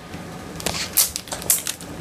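Plastic ice-pop wrappers and their bag crinkling as they are handled, in short irregular crackles.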